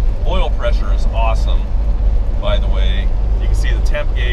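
Steady low rumble inside the cab of a 1973 Ford F100 4x4 under way: its 360 V8 engine, road and wind noise. Voices talk over it twice.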